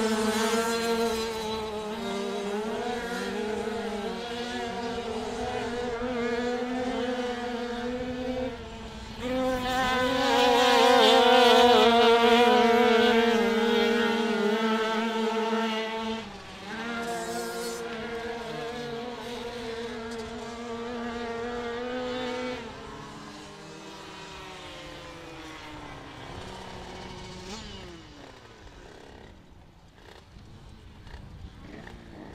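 Two 85cc two-stroke speedway bikes racing on a dirt oval, their engines held high in the revs with a steady, wavering note. They are loudest about ten to thirteen seconds in and then fade. Near the end the engine note falls away as the bikes slow after the finish.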